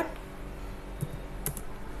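A few isolated clicks of a computer keyboard, about one and one and a half seconds in, over a faint steady room hum.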